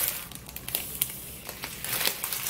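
Dried chili seeds pouring from a stainless steel bowl into a clear plastic zipper bag, with the plastic crinkling and a few light clicks as the bag is handled.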